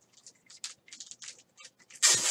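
Faint, rapid light scratches and taps from a felt-tip marker and a thin card being handled.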